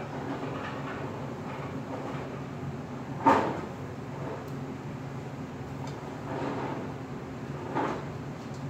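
Steady low hum of a commercial kitchen, with a sharp knock about three seconds in and a lighter knock near the end, as things are handled and set down at the counter.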